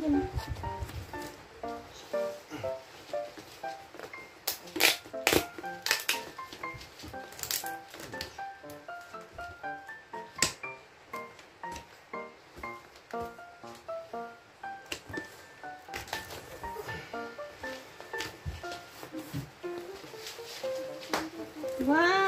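Light background music of short plucked notes, over sharp snips and crackles as the packing tape on a cardboard box is cut with scissors and the flaps are pulled open. The loudest sounds are a cluster of sharp cuts and tears about five to six seconds in and another near ten seconds.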